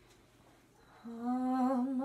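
A woman starts humming a lullaby a cappella about a second in: a single held note that wavers slightly.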